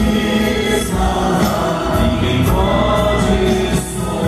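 Live gospel worship music: many voices singing together as a choir over a band with heavy bass and a steady beat.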